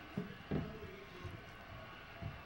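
Faint handling sounds of fingers picking a piece of bread up from a plate: two soft knocks in the first half second, then a smaller one later.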